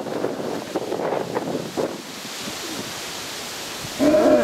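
Wind rushing over the microphone, a steady even noise, with a few faint scattered sounds in the first half that give way to a smoother hiss.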